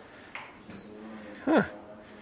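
A man's short spoken 'huh' about one and a half seconds in, over quiet indoor room tone with a faint steady hum and a couple of faint soft handling noises.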